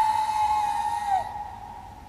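A high, airy, whistle-like tone from a contemporary piece for two cellos. It is held for about a second, bends down in pitch and stops, leaving a much quieter stretch.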